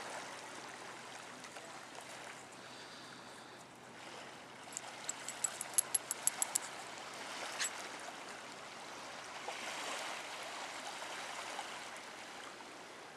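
Small waves washing on a sandy, pebbly shore, a steady hiss of water. About five seconds in comes a quick run of about ten sharp, high clicks, and a single click follows near eight seconds.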